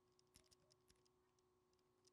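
Near silence: faint room tone with a low steady hum and a few faint clicks.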